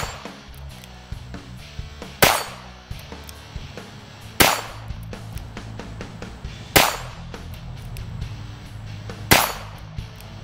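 Smith & Wesson 317 .22 LR revolver fired in slow, single shots: one right at the start, then four more about every two and a half seconds.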